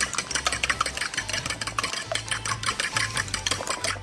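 Wire balloon whisk beating a thick cream-cheese and sugar mixture in a ceramic bowl, with a rapid, regular clicking of the wires against the bowl.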